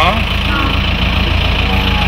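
Diesel tractor engine idling steadily: a constant low rumble, with a brief spoken word at the start.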